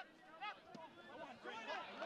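Faint shouts and chatter of players and spectators around a soccer pitch, several voices overlapping, with a short knock right at the start.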